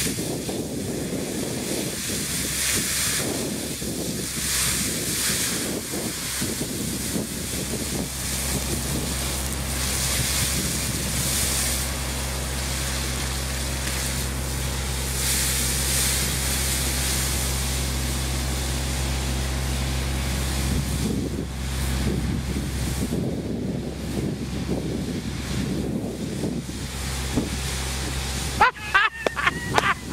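Fire hose stream spraying onto a burning fuel spill: a steady rush of spray over a low, steady engine hum, with wind buffeting the microphone.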